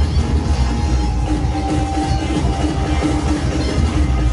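Loud breakcore played live from a laptop over a club sound system: heavy bass under a dense, fast beat, with a held tone from about a second in until near the end.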